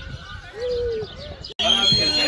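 A dove cooing in repeated, arched notes about half a second long, with faint bird chirps above it. About one and a half seconds in, the sound drops out and gives way to louder children's voices.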